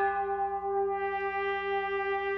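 Contemporary chamber ensemble with brass holding a long, steady chord.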